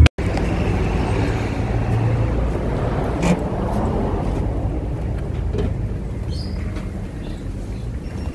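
Steady street traffic noise, a low even rumble that fades slightly as the camera nears the shop door, with a single brief knock about three seconds in.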